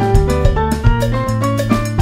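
Instrumental salsa-mambo band music with no singing: a quick run of short piano notes over a walking bass line and drum kit hits in a steady Latin groove.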